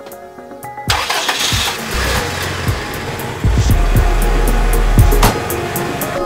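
A vehicle engine starts about a second in and keeps running, with a heavier low rumble from about halfway that eases off near the end. Background music plays throughout.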